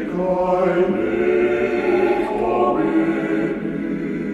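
Male vocal octet singing a cappella in close harmony: sustained chords that shift every second or so.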